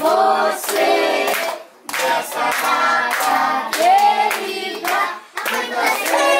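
Group of party guests singing a birthday song together with steady hand-clapping in time, with two short breaks between phrases.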